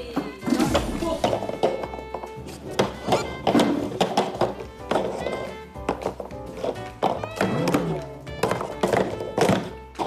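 Plastic stacking cups being stacked quickly on a table by two people at once, a rapid run of hollow plastic clacks and taps, under background music.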